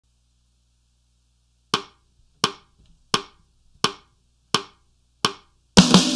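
A count-in of six sharp, evenly spaced clicks, about 0.7 s apart. Near the end the drum kit comes in with the backing music.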